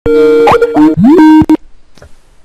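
Skype incoming-call ringtone: loud, bubbly electronic notes with quick upward pitch glides. It stops abruptly about one and a half seconds in as the call is answered.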